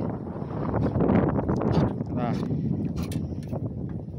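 Short exclamations from people's voices over wind buffeting the microphone, with a few sharp clicks a little after three seconds in.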